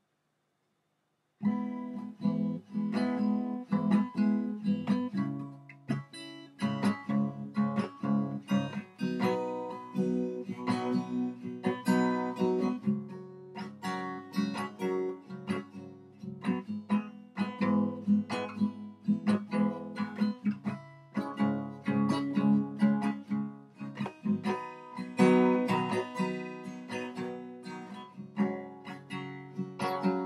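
Acoustic guitar playing chords as a song's instrumental intro, starting about a second and a half in.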